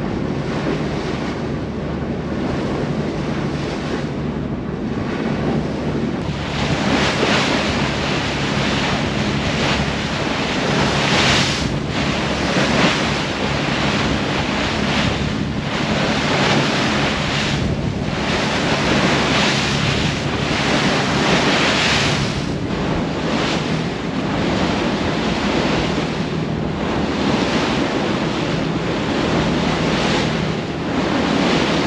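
Motor boat under way: rushing bow wake and spray along the hull, with wind buffeting the microphone and a steady low engine hum underneath. From about six seconds in, the rush surges louder every couple of seconds as the hull meets the swell.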